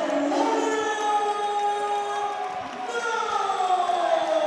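A ring announcer's voice over a microphone and PA, drawing out a fighter's introduction in long held vowels, then sliding down in pitch in one long falling call near the end.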